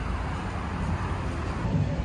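Steady outdoor road-traffic noise: a low rumble with a hiss over it and no distinct events.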